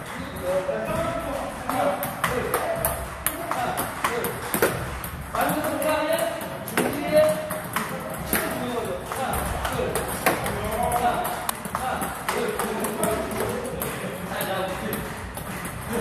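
Table tennis balls struck by rackets and bouncing on the table: a running series of sharp, hollow clicks.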